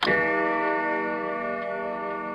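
A bell-like electronic chime struck once, many tones ringing together and fading slowly, opening a TV commercial.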